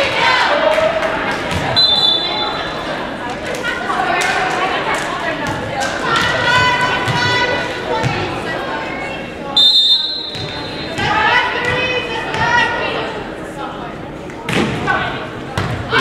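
Gym noise between volleyball rallies, echoing in a large hall: players and spectators calling out and chattering, a volleyball bouncing and being struck with sharp knocks, and a referee's whistle sounding briefly about two seconds in and again, louder, near ten seconds.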